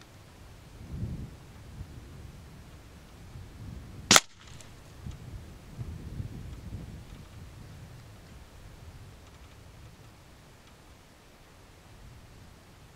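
A single shot from a Theoben Rapid 25 pre-charged pneumatic air rifle, a sharp crack about four seconds in.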